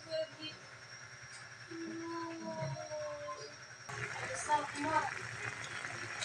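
Faint voices in the background, with a drawn-out pitched sound in the middle and a few faint spoken words near the end.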